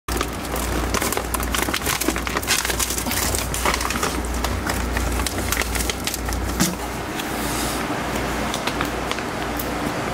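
Dense, irregular crinkling and crackling of plastic treat bags being handled in a refrigerator door, over a steady low hum.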